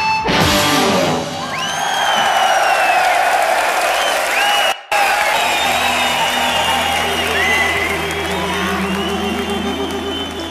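Arena crowd cheering and whistling after a final band crash at a rock concert. After a brief cut in the sound, a sustained low keyboard note and slowly climbing pitched notes begin under the cheering as the next song's intro.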